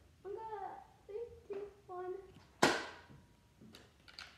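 A child's voice making short wordless sounds, then a single sharp crack of a spring-powered Nerf blaster firing a dart about two and a half seconds in, followed by a couple of faint clicks.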